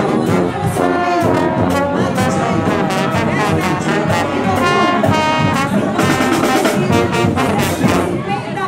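A marching band's brass section of trombones, trumpets and bell-front baritones playing a tune together, loud and close, with the band's drums beating time underneath.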